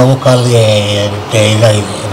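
A man's voice speaking slowly in long, drawn-out syllables at a low, fairly steady pitch.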